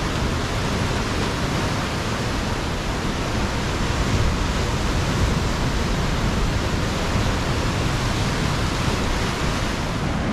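Ocean surf breaking and washing over a rocky shore, a steady rush of water noise.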